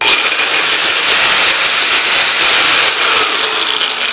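Electric angle grinder with a diamond blade switched on with no load, its motor spinning up at once to a loud, steady high whine and running free at full speed. This is the run-up to maximum RPM that should be reached before the blade touches work, so the motor is not overloaded. The sound eases off near the end.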